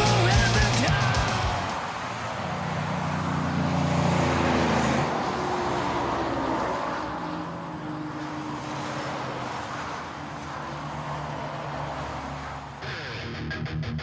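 Music fades out over the first two seconds, leaving a steady car engine hum under outdoor noise. An electric guitar comes in about a second before the end.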